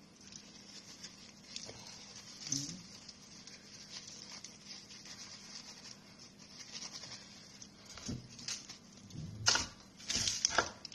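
Aluminium foil crinkling and rustling faintly as fingers poke holes in it, with scattered small ticks and a sharper knock near the end.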